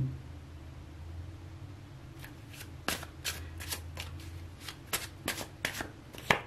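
Tarot cards being shuffled by hand: a run of light, irregular card snaps and flicks starting about two seconds in, over a faint steady low hum.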